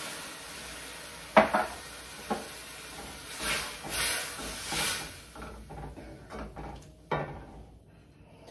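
Wine sizzling in a hot sauté pan as a wooden spoon stirs it through the vegetables, with scraping swishes against the pan. The sizzle fades over the first second. A sharp knock comes about a second and a half in, with lighter clicks and another knock near the end.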